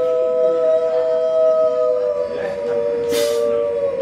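Two voices holding one long sung note in two-part harmony, steady throughout and dipping slightly in pitch as it ends, with a brief high hiss, like a cymbal, about three seconds in.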